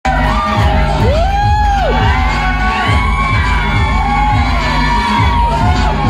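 Music with a steady bass beat playing over a sound system, with an audience cheering and whooping over it.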